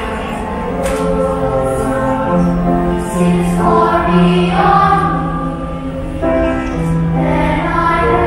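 Children's choir singing in several parts, holding long notes that move together in harmony.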